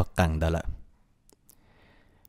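A narrator's voice speaking for the first moment, then a pause of near silence with two brief, faint clicks.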